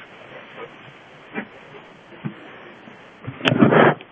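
Steady low hiss of a quiet room, with two faint taps, then a short louder burst of sound near the end.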